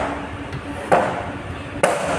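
Arc welding with a homemade ceiling-fan-stator welder: the electrode, held in pliers, is touched to steel strips, giving a sharp crackling snap about once a second as the arc strikes. A steady hum runs underneath.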